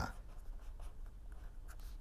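Pen writing on paper: faint, irregular scratching strokes as symbols are written out.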